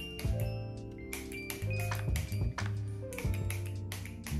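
Background music: a steady bass line under bright, chiming notes, with an even beat.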